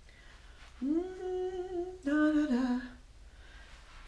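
A woman humming two held notes, about a second each, the second one lower and sliding down at its end.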